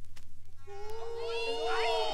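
On a vinyl record, after a faint click, several overlapping high voices come in about half a second in, calling with sliding, swooping pitches and growing louder.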